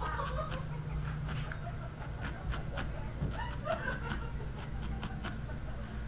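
A single felting needle stabbing repeatedly into a small wad of wool roving, giving faint irregular clicks a few times a second as the wool is sculpted, over a low steady room hum.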